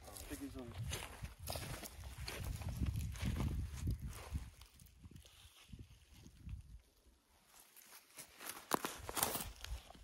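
Irregular rustling and footsteps, with a few brief quiet words near the start.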